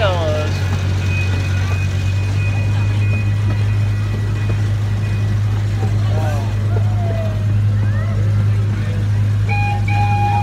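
Steady low hum of the zoo's ride train running as its open passenger car rolls along, with scattered voices of riders. A short two-pitch tone sounds near the end.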